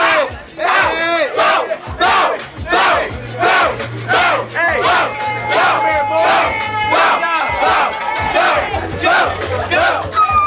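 A group of voices shouting in a rhythmic chant, about two shouts a second, over a hip-hop beat with a bass line; a held note joins in the middle.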